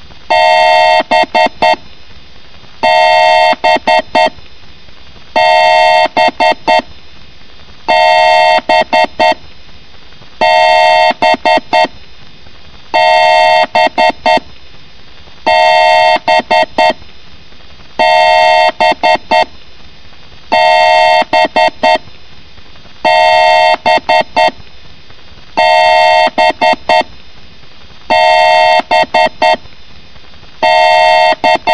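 Electronic beeping sound effect looping over and over, about every two and a half seconds: a held two-note tone of about a second, followed by four quick short beeps.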